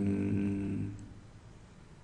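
A man's voice holding a long, low, level hum-like filler sound, which fades out about a second in, leaving quiet room tone.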